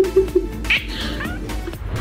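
A tabby cat meowing, with one clear meow about three quarters of a second in, over background music.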